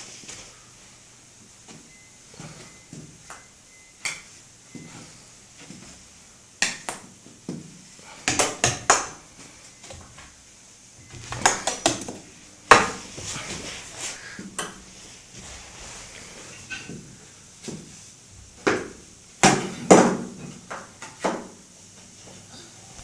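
Irregular sharp clacks and knocks, some coming in quick clusters, from a toddler's plastic toy golf club and toys knocking about.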